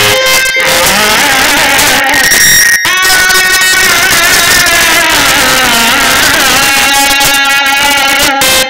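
Loud live Marathi gondhal folk music for Khandoba: a sustained, wavering melodic line, with a brief break about three seconds in.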